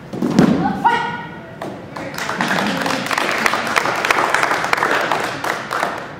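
A body thrown onto gym floor mats with a heavy thud, followed at once by a short shout. Then a few seconds of applause from the onlookers.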